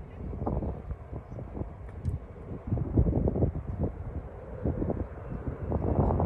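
Wind buffeting the microphone in uneven gusts, with faint indistinct voices in the background.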